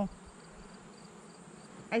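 Honey bees buzzing around an open hive. Under it runs a steady high insect trill with a faint chirp pulsing about four or five times a second.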